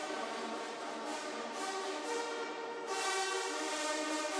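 Music with brass instruments holding sustained chords, moving to a brighter, louder chord about three seconds in.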